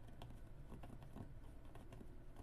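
Fine-tip pen writing on the raw back of a stretched canvas: faint, irregular small scratches and ticks of the pen strokes.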